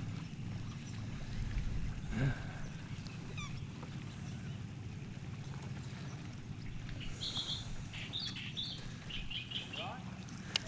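Steady low rumble of wind and water around a kayak on a lake, with short high bird chirps a few times, most of them in the last three seconds.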